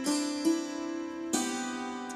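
Hammered dulcimer strings struck with wooden hammers: three strikes, the second about half a second after the first and the third nearly a second later, each note ringing on and overlapping the last.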